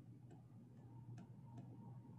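Near silence with a faint steady hum, broken by three or four faint, short clicks from a computer mouse as the web page is scrolled.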